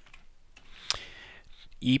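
Computer keyboard being typed on: a few scattered keystrokes, one sharper key click about a second in.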